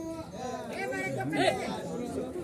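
Low voices talking and chattering, with no other distinct sound.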